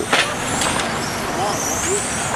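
Radio-controlled touring cars running on the track, their motors whining up and down in pitch as they accelerate and brake, with a sharp knock just after the start.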